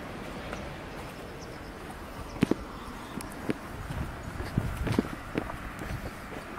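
Footsteps on an asphalt street: irregular short knocks over a steady outdoor background noise, coming more often in the second half.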